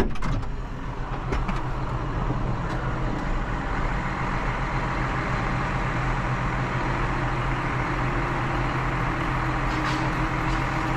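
Tractor diesel engines running, heard from inside a cab, with a clunk at the start; a John Deere tractor drives up close alongside and its engine grows louder over the first few seconds, then runs steadily.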